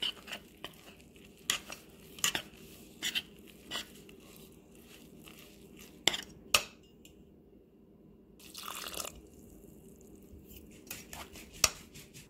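A steel spoon stirring a thick wheat flour and milk powder mixture in a metal bowl: irregular clinks and taps of spoon on bowl, with a longer scrape about two-thirds of the way through.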